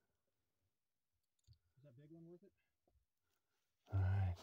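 Near silence, broken by two faint clicks and a short, faint, low voice sound in the middle; a loud voice sound starts just at the end.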